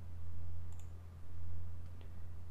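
Two faint computer mouse clicks, about a second apart, over a steady low hum.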